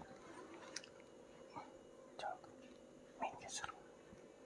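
Faint scattered clicks and brief soft rustling noises close to a clip-on microphone, a few separate ones about a second, two seconds and three and a half seconds in, over a low steady hum.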